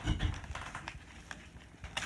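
Paper envelope being pulled and torn open by hand, with scattered short crackles and rustles. There is a dull bump just at the start.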